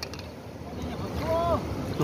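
Low, steady outdoor background noise in a pause between loud voices, with one brief faint voice call about a second and a half in.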